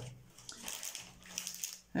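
Faint rustling and a few light clicks of small packaged craft supplies (bead and confetti tubes, plastic packets) being handled and set aside on a table.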